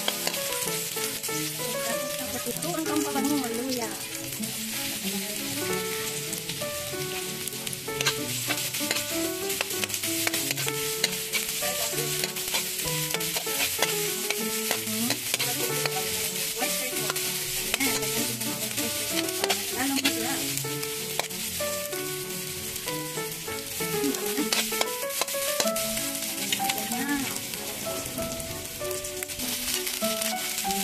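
Sliced shallots, garlic and ginger sizzling in a hot wok, stirred with a metal spatula that clicks and scrapes against the pan. Background music plays underneath.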